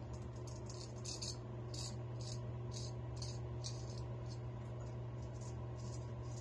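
Naked Armor Erec straight razor scraping through lathered stubble on the cheek in short strokes, about two a second, over a steady low hum.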